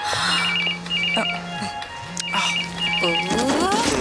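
Mobile phone ringing with a warbling electronic double ring: two short trills, a pause, then two more, over background music.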